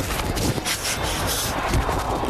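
Wind and rubbing noise on a football player's body-worn microphone during a play, a loud rushing hiss with low thuds that swells in the middle.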